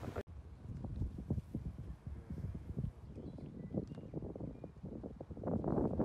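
Wind buffeting a phone microphone outdoors, an uneven low rumble in gusts that grow stronger near the end.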